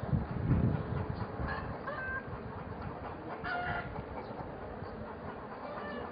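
Military vehicles driving past along a street: a steady low rumble with a rattling clatter. A few short high-pitched calls break through, once about two seconds in and again about three and a half seconds in.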